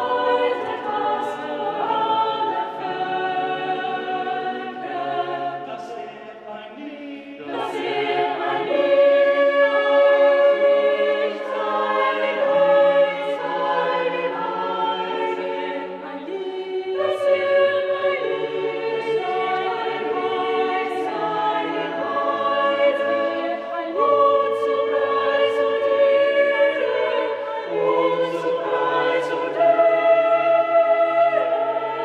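Small mixed chamber choir singing a cappella: sustained chords in several parts that change every second or two. The singing drops back briefly, then swells fuller and louder about eight seconds in.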